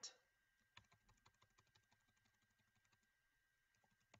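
Faint computer keyboard keystrokes: a quick, even run of clicks for about two seconds as the typed text is deleted, then a few more clicks near the end.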